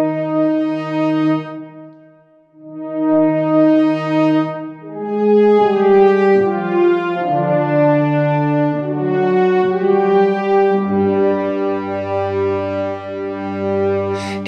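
Spitfire Audio Abbey Road One Grand Brass sampled ensemble of French horns with tuba, played on a keyboard at a loud, higher dynamic: slow, sustained brass chords. The first chord fades out about two seconds in, new chords build from there, and a low bass note joins about eleven seconds in.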